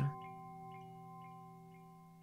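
Soft meditation background music of bell-like chime tones: several tones held together and slowly fading, with faint light strikes repeating about four times a second.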